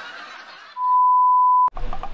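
An edited-in beep tone, one steady pitch held for about a second, starting a little before halfway and cut off with a click. Before it, faint background music fades out.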